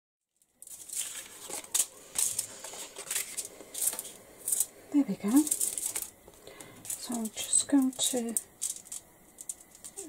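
Aluminium foil crinkling and rustling in a run of short crackly bursts as paper craft pieces are handled and moved about on it.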